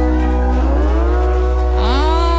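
Live band music: steady sustained chords over a low drone, with one held note sliding slowly upward through the second half. A sung or bending melodic line comes in right at the end.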